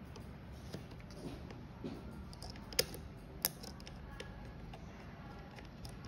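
Small metal clicks and ticks of a tiny screw being turned in with a small screwdriver on a hard drive's circuit board, with two sharper ticks about three seconds in.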